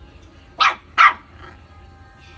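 A black mixed-breed puppy barking twice, two short barks about half a second apart.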